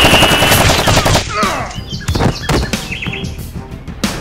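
Automatic gunfire sound effect, a rapid burst of shots for about the first second, then scattered single shots, dubbed over a toy foam-dart blaster being fired.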